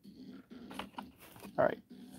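Faint handling sounds of a cardboard toy box being picked up and moved: a few soft taps and rustles, then a short spoken "alright" near the end.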